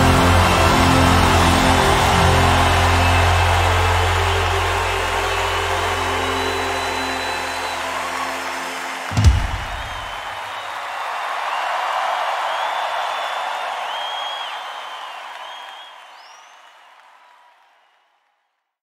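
A live worship band plays the end of a song, with a steady bass under it, closing on a sharp final hit about nine seconds in. A live audience then cheers and applauds, swells briefly, and fades out to silence near the end.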